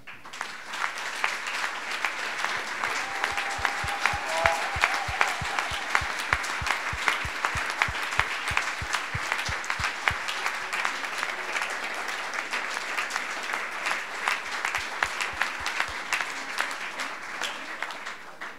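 An audience applauding, a dense steady clapping that starts right away, lasts about seventeen seconds and dies away near the end. For several seconds in the middle a run of evenly spaced low thumps sounds under the clapping.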